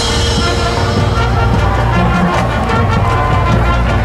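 A high school marching band playing: sustained brass chords over drum and front-ensemble percussion strikes.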